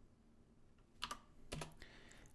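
Key clicks on a Commodore 128 keyboard: a sharp click about a second in, then a short cluster of clicks half a second later, as a key is pressed to answer the compiler's prompt.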